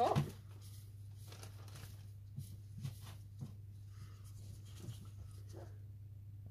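Dried rose and cornflower petals rustling faintly as gloved fingers mix them in a small glass bowl, with a few soft ticks, over a steady low hum.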